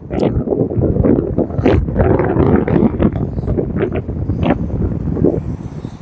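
Wind buffeting a phone microphone, a loud uneven rumble, over the sound of cars driving round a roundabout.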